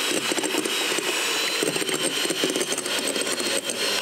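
Electric hand mixer running steadily, its beaters whisking egg whites and sugar in a glass bowl: a steady motor whine with frequent small clicks.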